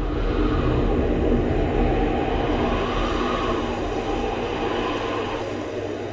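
Steady rumbling noise with a heavy low end, starting abruptly and easing off a little toward the end: a dramatic sound effect from the TV serial's soundtrack.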